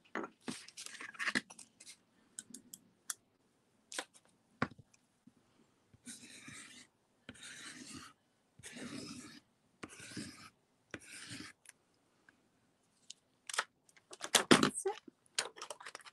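Pencil drawing on the back of a sheet of paper laid on an inked printing plate, making a trace monoprint: five scratchy strokes of about a second each in the middle stretch. Paper rustling and light taps at the start and again near the end, as the sheet is handled.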